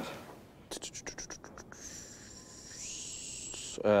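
A quick run of light clicks or taps, then a soft steady scratching hiss lasting about two seconds, as of small objects being handled.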